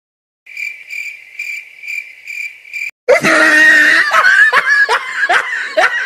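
Cricket-chirp sound effect, a steady high chirp repeating about three times a second, the stock cue for an awkward silence. It cuts off, and about halfway through a louder burst of laughter starts, each laugh rising in pitch.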